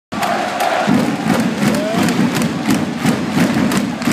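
Ice hockey arena crowd chanting, with sharp rhythmic beats about three times a second.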